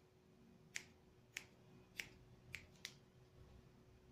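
Hairdressing scissors snipping through hair: five short, sharp snips within about two seconds, the last two close together.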